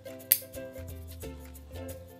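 Background music with steady held notes. About a third of a second in, a single sharp click of small metal nail clippers snipping a hedgehog's claw.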